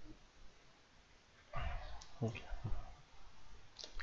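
Computer mouse clicking a few times against quiet room tone, with a short breath-like noise about one and a half seconds in.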